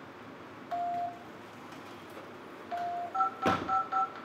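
Electronic keypad beeps: two single steady beeps about two seconds apart, then a quick run of two-tone beeps near the end. A sharp knock comes about three and a half seconds in.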